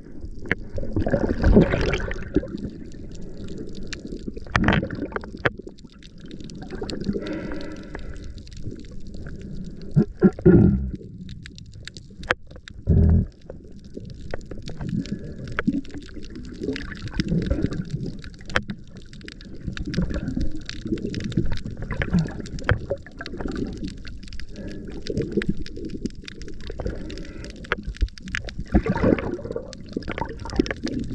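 Underwater water noise picked up by a camera moving through the water: irregular low surging and gurgling as the diver swims, with many faint scattered clicks and crackles. Two louder thumps stand out, about ten and thirteen seconds in.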